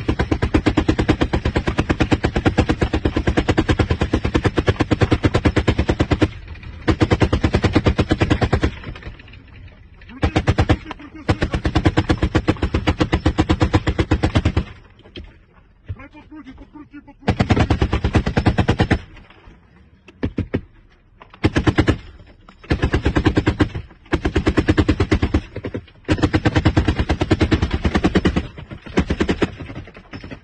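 A machine gun firing long automatic bursts. The first burst runs about six seconds, then comes a string of shorter bursts with pauses of a second or two between them.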